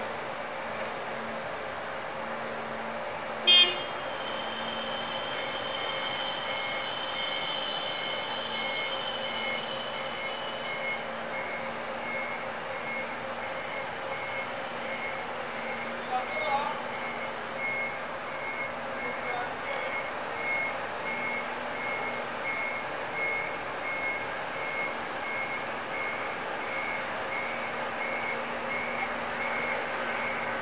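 Forklift warning beeper sounding a regular, evenly spaced beep over a steady low hum. About three and a half seconds in there is a single sharp knock, the loudest sound, followed by a high ringing tone that fades out over several seconds.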